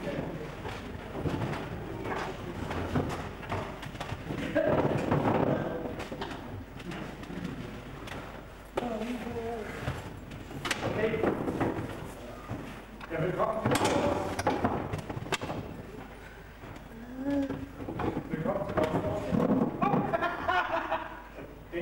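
A man's voice in bursts with short pauses between, some of it pitched and wavering.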